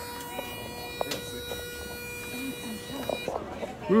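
Elevator drive whining steadily at several fixed pitches as the car climbs, cutting off suddenly about three seconds in as it stops, with a few faint clicks.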